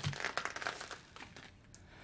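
Light crinkling and rustling with many small clicks, fading away after about a second and a half.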